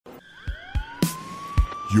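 Intro music: a single synth tone sweeps upward like a siren and then holds, over a few kick-drum beats and a cymbal crash about halfway through. A voice comes in right at the end.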